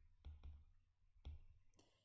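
A few faint clicks of a stylus tip tapping on a tablet screen while handwriting.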